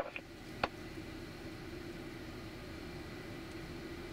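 Steady low hiss and hum of an air traffic control radio feed between transmissions, with one short click just under a second in.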